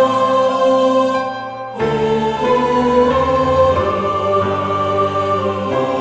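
Choir singing a Korean sacred song in parts with piano accompaniment, holding long notes. The sound drops away briefly about a second in, then the choir and piano come back in.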